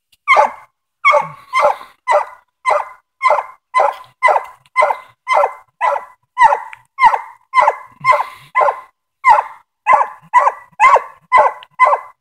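Five-month-old English Coonhound pup barking over and over at a steady pace of about two barks a second. This is a treeing bark, the sign that she has a raccoon up the tree.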